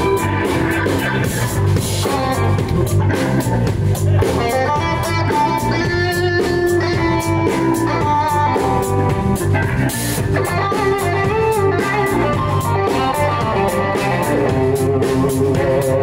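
Live blues band playing an instrumental break: an electric guitar solo over bass guitar and drum kit, with no singing.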